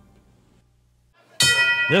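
Near silence, then about one and a half seconds in a wrestling ring bell is struck and rings on with a bright, steady tone, signalling the start of the match.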